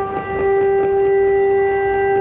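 A wind instrument holds one long, steady note in the classical dance accompaniment music, with percussion strokes underneath.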